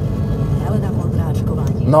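A faint voice from the car radio, turned up with the steering-wheel volume buttons, over the steady low road and engine noise inside a moving Mini Cooper SD's cabin.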